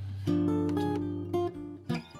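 Archtop jazz guitar played fingerstyle in a chord-melody style: a chord with a low bass note is struck about a quarter second in and left to ring, then the melody moves with a new note near the middle and another just before the end.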